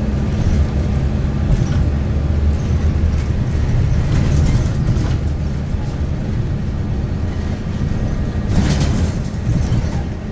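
Interior running noise of a New Flyer Xcelsior XDE60 articulated diesel-electric hybrid bus under way: a steady low drivetrain hum with road noise. There is a brief louder burst of noise near the end.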